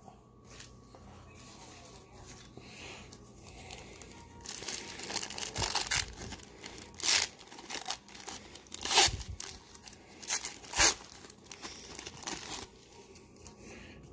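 A Pro Set hockey card pack's wrapper being torn open by hand, starting about four seconds in: a run of irregular crinkles and sharp rips, the loudest three a couple of seconds apart near the middle.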